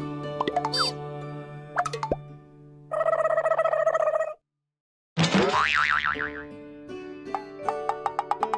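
Playful background music laid with cartoon sound effects: springy boings and plops. After a brief drop to silence about halfway, a wobbling, falling whistle-like sweep follows, then quick plucked notes near the end.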